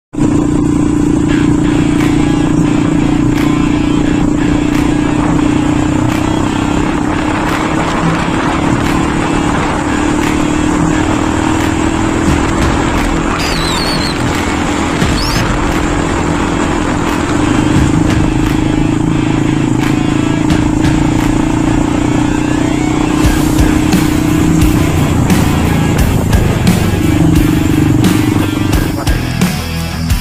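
Motorcycle engine running steadily at cruising speed with road and wind noise; its pitch dips for a couple of seconds near the end.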